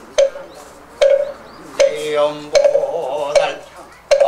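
Moktak (Korean Buddhist wooden fish) struck at a steady pace, five strikes a little under a second apart, each with a short hollow ring, keeping time for a man's Buddhist chanting between the strokes.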